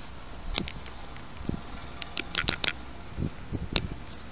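A few sharp clicks and crackles over a low, steady background hiss: one about half a second in, a quick cluster of four or five about two seconds in, and one more near the end.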